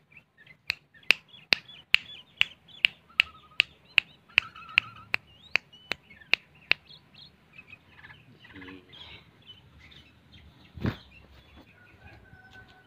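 Caged songbird calling: a run of about sixteen sharp clicks, two or three a second, with short chirps and brief whistles between them, ending about seven seconds in, then softer scattered chirps. A single thump near the end.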